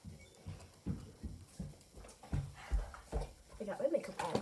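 Footsteps thudding across the floor, coming closer, followed near the end by a short vocal sound.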